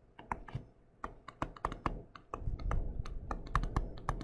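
Stylus tapping and scraping against a tablet screen while handwriting words, as a quick, irregular run of small clicks that gets denser after about a second.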